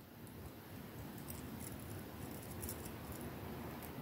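Faint handling noise: a few small clicks and rustles from jewellery pliers worked on a sterling silver ear wire, over low room noise.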